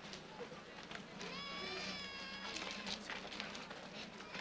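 Young children's high voices calling out and chattering indistinctly, with several voices overlapping and growing louder from about a second in.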